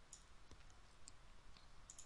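Near silence with a few faint, sharp computer clicks from typing on a keyboard and clicking a mouse.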